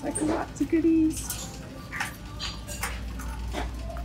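Noisy shop-floor din with short whining cries in the first second, followed by scattered clicks and rattles.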